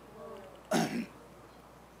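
A man clearing his throat once, a short, rough two-part burst about two-thirds of a second in.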